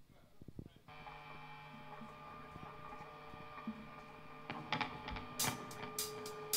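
A faint, steady chord rings out on an amplified electric guitar about a second in and is held, with a few sharp clicks near the end, leading into the band's next song.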